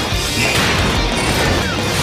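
Cartoon fight sound effects of rocks being smashed, with crashing impacts over loud, continuous action music.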